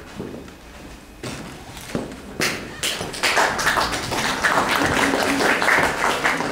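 Audience applause: a few scattered claps at first, filling out into steady clapping from about three seconds in.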